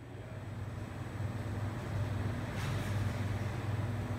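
Steady low machine hum from an EOS M290 laser powder-bed fusion metal 3D printer running.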